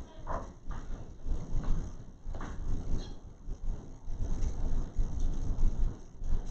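Quiet room tone of a lecture hall: a steady low rumble with a few faint, irregular small noises.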